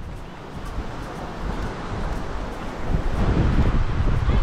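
Wind buffeting the microphone, its low rumble growing louder about three seconds in, over the wash of surf.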